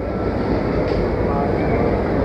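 Steady, fairly loud rumbling background noise of a busy indoor food court, with faint chatter of other people mixed in.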